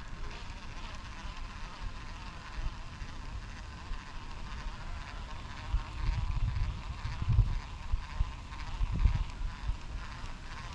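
A steady buzzing drone, with low rumbles and knocks that get louder from about six seconds in.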